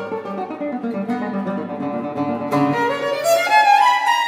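Violin and classical guitar duo playing contemporary classical chamber music: busy guitar figures sound under the violin, and about two and a half seconds in a new attack is followed by the violin climbing in pitch to the end.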